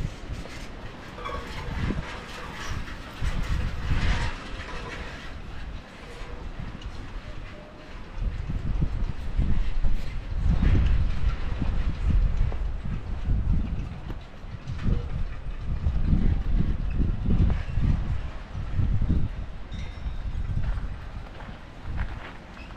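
Wind buffeting the camera's microphone in gusts: a low rumble that swells and fades irregularly, heavier in the second half.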